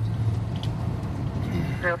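Steady low hum of a patrol car's engine and road noise, heard from inside the cabin as it drives. A brief voice cuts in near the end.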